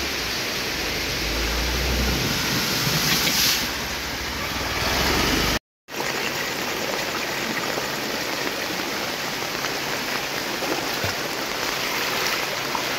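Muddy floodwater rushing across a road in a steady flow, with a constant rush of water that drops out for an instant about halfway through.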